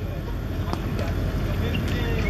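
Steady low rumble and hiss of outdoor background noise, with two faint ticks about a second apart.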